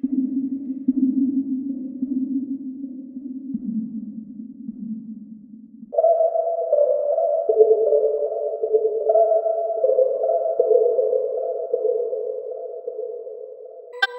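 Krakli S3 string-machine software synthesizer playing slow, sustained synthetic string-pad chords. A low chord holds for about six seconds, then higher chords take over, changing every second or two and fading gradually near the end.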